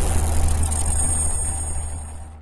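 Cinematic intro sound effect: a deep, steady rumble with hiss that fades out near the end.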